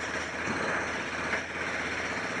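A steady rumble with a hiss over it, like an engine or traffic, swelling in and fading out without a break.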